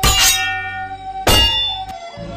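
Logo jingle: music with two bright metallic hits, one at the start and one about a second and a quarter in, each ringing out over a held tone.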